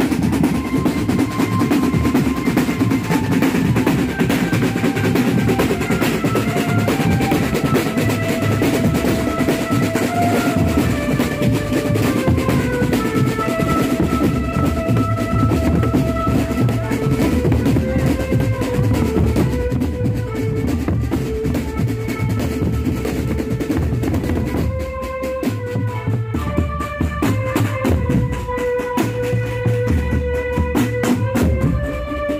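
Marching drum band of snare, tenor and bass drums playing a steady, dense beat, with a melody of held notes on top. The drumming thins out and becomes sparser near the end.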